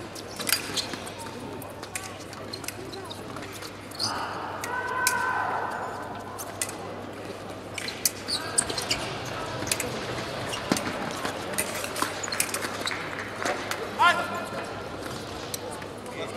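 Fencing hall ambience: scattered sharp taps and stamps of footwork and blade contact on the pistes, with voices calling in the hall, one voice rising briefly near the end.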